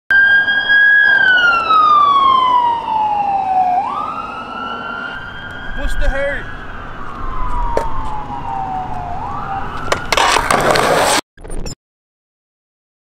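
Ambulance siren wailing: its pitch slides slowly down over about three seconds, then sweeps quickly back up, twice over. Near the end a loud rushing noise comes in for about a second and cuts off suddenly.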